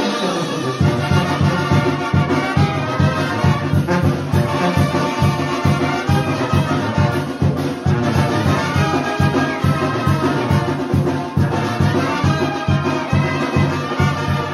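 Mexican banda brass band playing live dance music: trumpets and trombones carry the melody over tuba bass notes on a steady quick beat.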